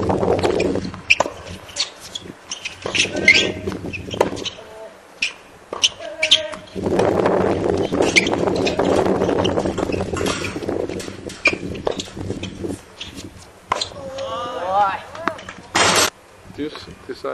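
Tennis balls struck by rackets in a doubles rally: a run of sharp pops at uneven intervals, mixed with footsteps on the hard court. Players' voices call out several times, and stretches of low wind rumble sit on the microphone.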